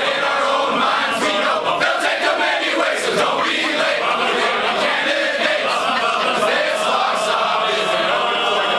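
A large group of men singing their class song together in unison, loud and steady: warrant officer candidates, led by one man in front beating time with a raised arm.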